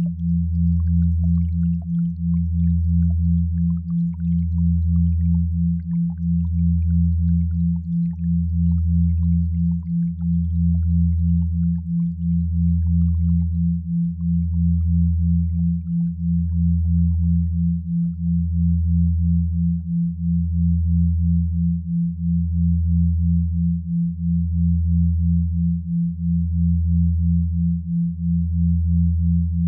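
Synthesized binaural and isochronic sine tones: a low hum pulsing about twice a second, over a deeper tone that swells and dips about every two seconds.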